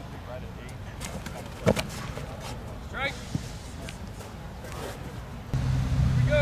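A single sharp thump about a second and a half in, then a fainter knock, over faint distant voices. A steady low rumble comes in near the end.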